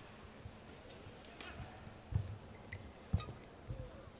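Faint badminton court sounds during a rally: a few sharp racket hits on the shuttlecock and thuds of footwork on the court, the clearest hit about three seconds in.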